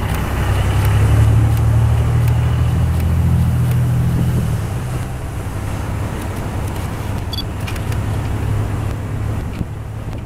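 A line of police cars and SUVs driving slowly past close by, engines running and tyres on the road. One deep engine rumble is loudest for the first four seconds or so, then eases to a lower steady drone as the next vehicles pass.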